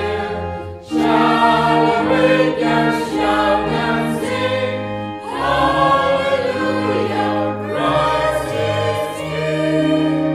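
Choir singing a slow hymn in sustained chords with accompaniment. A new phrase begins about a second in and another about halfway through.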